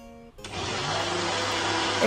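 Personal bullet-style blender switching on about half a second in and running steadily, blending bael (wood apple) juice with milk and ice cubes.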